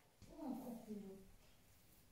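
A single wordless vocal call, about a second long, falling steadily in pitch and then fading.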